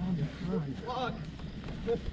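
A voice speaking a few short, quiet phrases over a steady low rumble.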